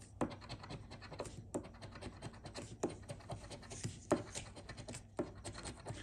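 A coin scratching the coating off a paper scratch-off lottery ticket: a rapid run of short scraping strokes, with a sharper click about every second and a quarter.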